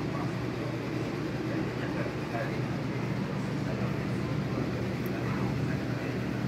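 Steady low background noise of a room with faint, indistinct voices.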